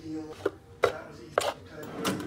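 Hard plastic bowls knocking together and against a wire dish rack as they are lifted off it, three sharp knocks.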